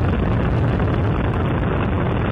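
Space Shuttle Endeavour's two solid rocket boosters and three liquid-fuel main engines firing at full thrust just after liftoff: a loud, steady, deep rush of noise, heaviest in the low end.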